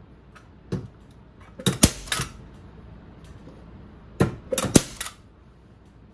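Staple gun driving staples through fleece into an ottoman frame: a small click, then two clusters of sharp mechanical clacks about three seconds apart, each with one loud shot among smaller clicks.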